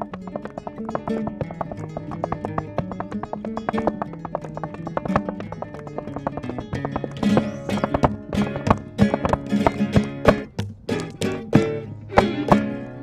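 Flamenco tangos played on violin and acoustic guitar, with a dancer's heeled shoes striking a board in rapid footwork. The strikes grow denser and louder over the second half.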